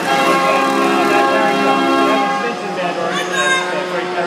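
65-key Bruder Elite Apollo band organ playing, its pipes and bells sounding together in held chords that change about two and a half seconds in.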